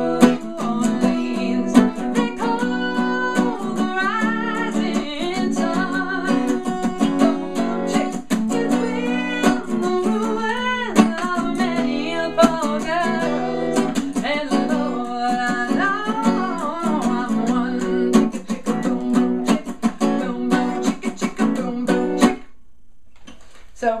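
Capoed acoustic guitar strummed in a steady rhythm on minor-key chords while a woman sings a folk melody over it; the playing and singing stop about 22 seconds in.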